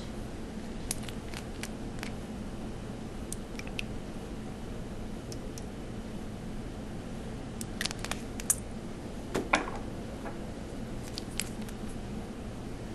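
Quiet handling of small craft bottles while drops of colour are added to a marbling water bath: scattered small clicks and taps, a few louder ones about eight to nine and a half seconds in, over a steady low hum.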